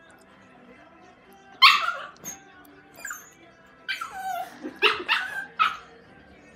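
A small puppy barking in short, high-pitched yips, about six or seven in all. The first and loudest comes about one and a half seconds in, and a quick run of barks follows in the second half.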